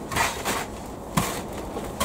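Hands rubbing and turning a gritty mix of peat-free compost, vermiculite and perlite in a plastic potting tray: a dry rustling scrape, with one short sharp click a little after a second in.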